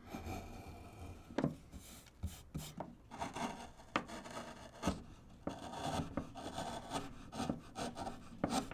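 Hand wood-carving gouge cutting into basswood: short, irregular scraping strokes with a few sharp clicks scattered through.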